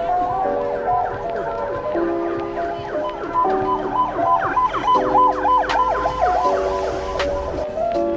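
Ambulance siren wailing in quick rising-and-falling sweeps with a fast two-note alternation, coming in about two seconds in, loudest midway and fading near the end.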